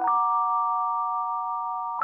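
Intro of a slow R&B trap beat in B minor: a soft, bell-like keyboard chord struck at the start and held steady, with no drums yet. A new chord lands right at the end.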